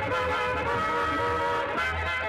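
Lively old-time dance-band music: violins playing the tune over a double bass's steady pulsing beat.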